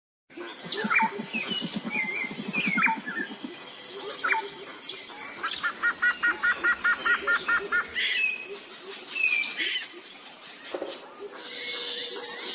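Forest ambience of many birds chirping and calling over a steady high-pitched insect-like drone. A low rapid pulsing sounds in the first few seconds, and a quick run of about ten repeated notes comes around six to eight seconds in.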